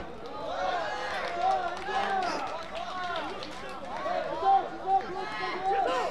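Footballers and coaches shouting and calling to one another across an outdoor pitch, several voices overlapping. Two short sharp knocks come about four and a half and five seconds in.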